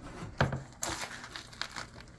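Cloth towel rustling as a rotisserie chicken on its metal spit rod is handled and set down on a wooden cutting board, with a couple of sharp knocks, the loudest about half a second in.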